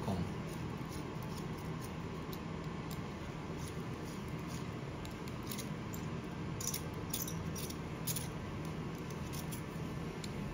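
Small metallic clicks and ticks from an Allen key turning and seating in the screws of a steel distractor tool, loosening them, scattered over a steady low hum.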